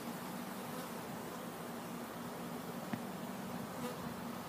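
Honey bees buzzing around an open hive, a steady hum, with one faint tick about three seconds in.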